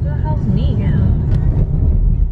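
Steady low rumble of a car driving, heard from inside the cabin, with a few brief faint words in the first second.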